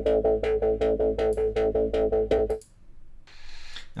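A djembe drum loop playing back through a resonant filter in a drum sampler plugin: a fast, even run of hand-drum hits with a strong sustained ringing tone under them. It stops suddenly about two and a half seconds in, leaving a faint hiss.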